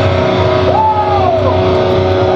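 Heavy metal band's distorted electric guitars holding a ringing chord. About a second in, one note bends up and slides back down.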